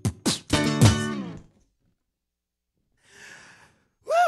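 The last hits of a looped percussive beat with acoustic guitar, ending on a final chord that rings and fades out about a second and a half in. Then silence, and a faint breath near the end.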